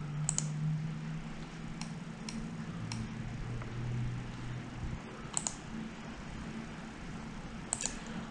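Computer mouse clicking about half a dozen times at irregular intervals while paging through web photos, over a steady low hum.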